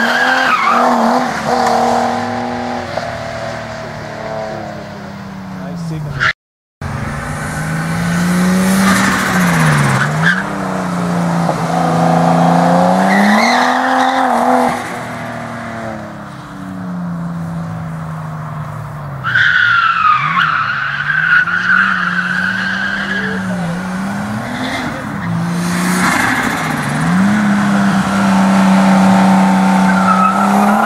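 Nissan R32 Skyline driven hard on an autocross course: the engine revs rise and fall repeatedly through the turns, with tyres squealing at times. The sound cuts out briefly about six seconds in.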